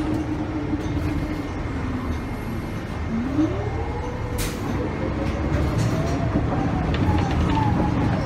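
Inside a moving city transit bus: a steady drivetrain rumble with a whine that rises in pitch from about three seconds in as the bus speeds up, then drops back near the end. A single sharp click sounds about halfway through.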